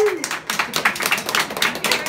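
A small group clapping by hand, a quick irregular patter of claps, while a held sung note ends just after the start.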